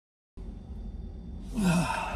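A man lets out a breathy, voiced sigh that falls in pitch, about one and a half seconds in. It comes over a low steady hum inside a car cabin, which begins after a moment of silence.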